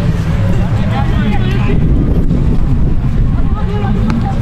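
Wind rumbling on the microphone, with distant shouting voices of footballers and spectators around the pitch.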